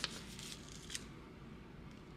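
Faint rustling of a sheet of sublimation transfer paper handled between the fingers, with a soft tick about a second in.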